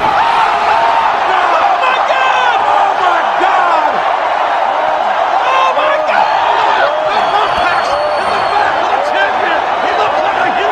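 A loud crowd of many voices shouting and cheering without a break, with a man's voice among them.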